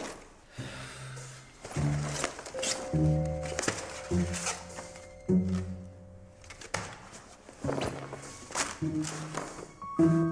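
Background music: a halting line of short, low string notes stepping about once a second, with a few crisp rustles and knocks between them.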